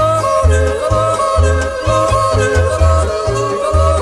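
Yodeling polka from a 1969 LP: a man's yodel leaping back and forth between low and high notes over a polka band with a steady bass beat.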